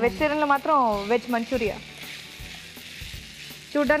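Cooked basmati rice and vegetables being stir-fried in a hot nonstick frying pan with a wooden spatula: a steady sizzle with scraping and stirring. It is heard on its own for about two seconds in the middle, with a woman's voice over it at the start and again just before the end.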